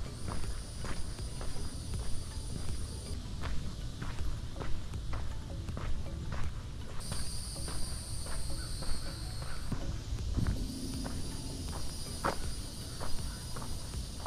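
Footsteps on a mulch and dirt garden path at a walking pace, over a low rumble. A steady high buzz comes and goes in stretches of a few seconds.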